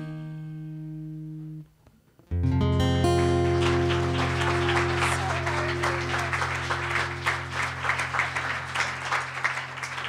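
Acoustic guitar and lap slide guitar ringing out on the song's closing chords. After a brief silence about two seconds in, a final full chord is struck and left to ring, with light clapping over it.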